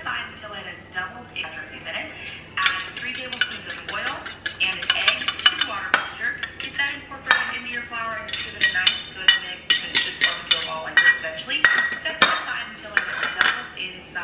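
Metal spoon stirring and scraping in a small metal bowl, with many rapid clinks and brief metallic ringing.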